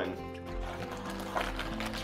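Background music with steady held notes, and a short faint click about one and a half seconds in.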